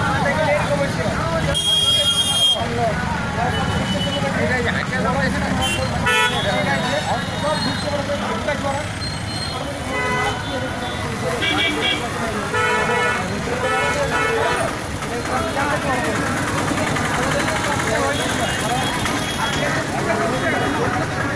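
Busy road junction: many people talking over passing motor traffic, with vehicle horns honking, one honk about two seconds in and a run of short honks between about ten and fifteen seconds in.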